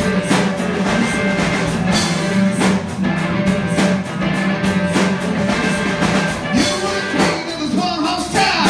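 Live rock band playing: electric guitar and bass over a steady beat, with a voice singing in the last couple of seconds.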